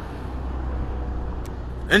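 Steady low rumble of road traffic, with a faint click about one and a half seconds in.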